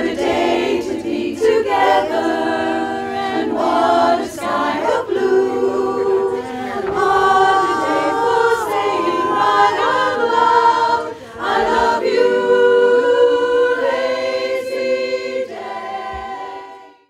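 Women's voices singing a cappella in barbershop-style close harmony, several parts holding chords together.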